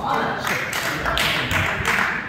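Spectators applauding, a dense patter of clapping that fills the two seconds.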